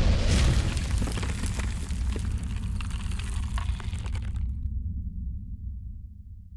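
Logo-sting sound effect: a deep boom at the start, followed by a crackling, rumbling tail that fades away over several seconds.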